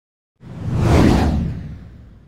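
Whoosh sound effect for an animated logo reveal: silent at first, it swells in about half a second in, peaks around one second and fades away, with a deep rumble beneath it.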